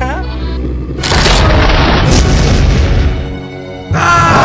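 A cartoon soundtrack of sound effects: a deep booming rumble, with a loud noisy blast coming in suddenly about a second in and fading out just after three seconds, over dramatic music.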